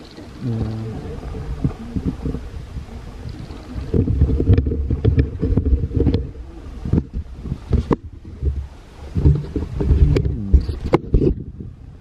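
Handling noise on a camera's built-in microphone: low rumbling, scuffing and repeated knocks as the camera is moved about and turned round, much louder from about four seconds in.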